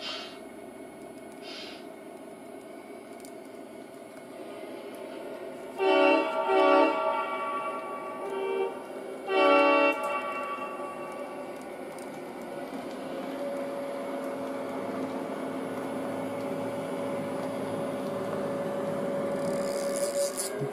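Model diesel locomotive's onboard sound system sounding its horn in several short blasts, starting about six seconds in, the last near ten seconds, then its engine running sound building steadily as the train pulls away.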